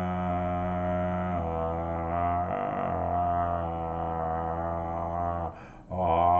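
A man chanting a deep, wordless mantra-like drone, held on one low steady pitch with the vowel slowly shifting, broken once near the end by a short pause for breath.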